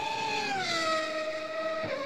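A single held musical note that dips slightly in pitch at the start and then holds steady, a transition sting between segments.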